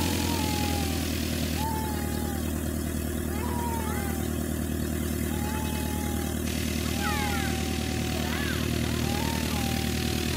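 Light aircraft's piston engine running steadily at low taxi power, an even drone with no change in pitch, while short gliding whistled notes sound several times above it.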